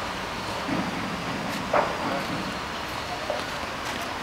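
Steady outdoor background noise, like distant road traffic, with a single faint knock a little before halfway through.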